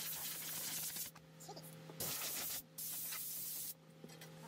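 Three bursts of spraying hiss, each starting and stopping abruptly: a longer one of about a second at the start, then two shorter ones close together in the second half.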